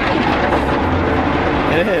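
Rotating brushes of an automatic car wash scrubbing over the rear window and body, heard from inside the car: a loud, steady rumbling, swishing noise, called horrible by those inside.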